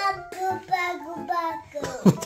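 A young child singing in a sing-song voice, the pitch sliding up and down, with a short break near the end.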